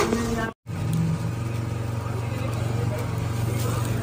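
A brief voice, a sudden moment of silence about half a second in, then a steady low mechanical hum.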